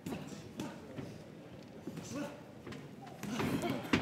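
Boxing hall ambience at ringside: faint voices and shouts from the crowd and corners, rising briefly near the end, over scattered light taps and thuds of boxers' feet shuffling on the canvas and punches landing.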